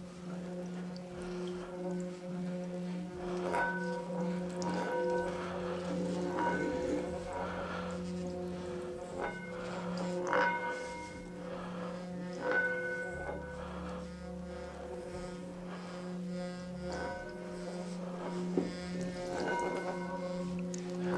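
An antique singing bowl filled with water, sung by rubbing a wrapped wooden striker around its rim. It gives a steady low hum, with higher ringing overtones that swell and fade again and again. Faint crackling comes from the water churning in the bowl.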